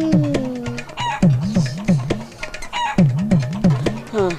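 Chicken clucking over comic background music: a bouncing low figure repeating about three times a second, with short squawk-like calls above it and a held gliding tone in the first second.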